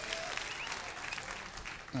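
Live audience applauding, many hand claps with crowd voices mixed in, easing off slightly toward the end.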